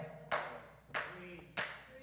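Hand claps, three sharp single claps in a steady rhythm about two-thirds of a second apart.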